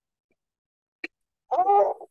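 A six-month-old infant's brief vocalization, a pitched voiced sound of about half a second near the end, after near silence broken by a single click about a second in.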